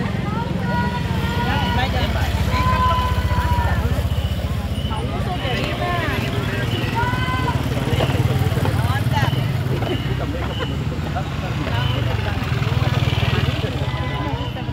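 Motorcycle engine idling close by, a steady low rumble, with the voices of people in the street over it.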